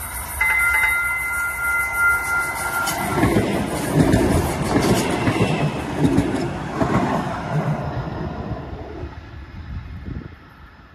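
TriMet MAX light-rail train approaching and passing close by. A steady high-pitched tone sounds for the first few seconds, then a loud rumble and clatter as the cars go past, fading near the end.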